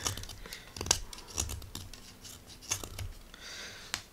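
Ganzo G7392-CF folding knife's 440C stainless blade carving shavings off a green wood branch: a series of short scraping cuts with small clicks, and a sharp click near the end.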